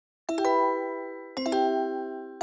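Logo jingle of bright, bell-like struck notes. It begins about a quarter second in with a quick run of three notes that ring on and fade, and a second run of three follows about a second later.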